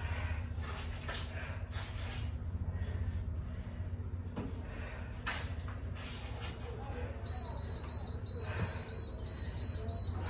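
A woman's hard breathing, with breathy exhales about every second or two as she lunges and kicks, over a steady low hum. About seven seconds in, a thin, steady high tone starts and holds.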